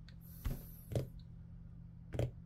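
Quiet room tone with a low steady hum, broken by two brief soft knocks about half a second apart in the first second.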